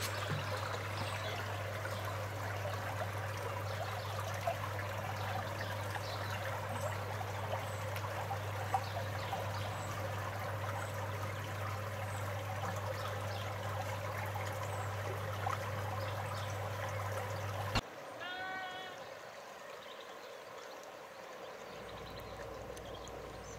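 Shallow stream trickling and splashing over stones, with a steady low hum underneath. Near the end the water sound cuts off suddenly and a sheep bleats once, a short wavering baa.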